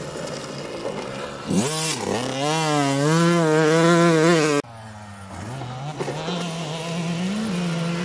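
Motocross dirt bike engine revving under load: the pitch climbs about a second and a half in and holds with a wavering rise and fall, then cuts off suddenly about halfway through to a quieter, lower engine note that rises slightly near the end.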